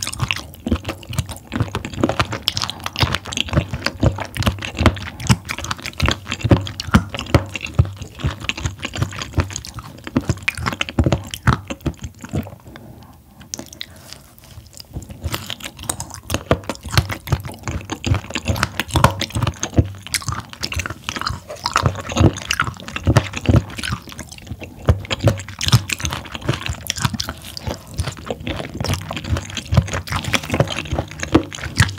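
Close-up chewing of abalone: a rapid, dense run of wet mouth clicks and squelches. It eases off for a couple of seconds about halfway through, then picks up again.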